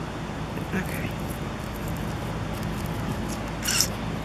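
Steady outdoor background noise with a faint low hum, and one short hissing rustle near the end.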